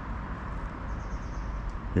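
Steady outdoor street ambience: a low rumble and hiss of a small town, with faint high bird chirps about halfway through.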